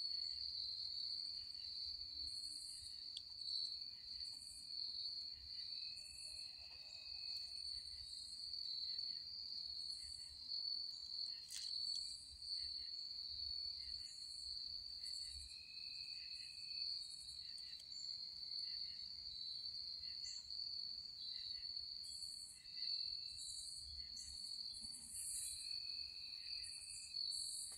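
Night chorus of tree frogs: an unbroken high-pitched trill, with shorter, even higher-pitched bursts from other callers about once a second.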